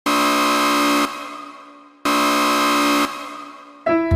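Two identical synthesized horn-like notes, each held about a second and then fading, two seconds apart. Music with piano and drums starts just before the end.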